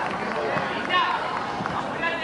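Overlapping voices of spectators and young players chattering and calling out across the pitch, with no clear words, including a high call about a second in, over a steady outdoor background.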